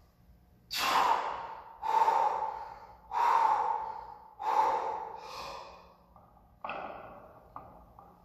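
A lifter's hard breathing during a heavy barbell back squat set: four loud, forceful breaths about a second apart, then softer, shorter ones near the end.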